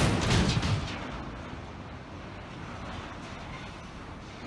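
A sudden heavy crash as a ferry strikes a steel dockside container crane, dying away over about a second into a steady rushing noise.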